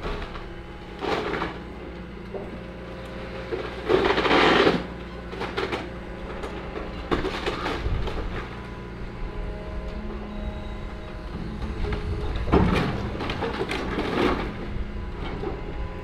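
John Deere excavator's diesel engine running steadily under load while its bucket pulls down a wooden staircase. Wood cracks and crashes several times, loudest about four seconds in.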